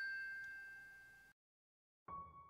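The last note of a chiming, glockenspiel-like intro jingle ringing out and fading, then cut off to dead silence about a second and a quarter in.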